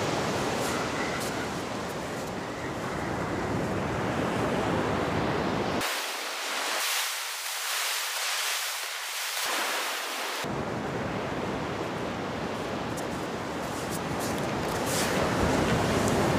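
Ocean surf breaking steadily on the beach, with wind rumbling on the microphone. The low wind rumble cuts out for a few seconds midway.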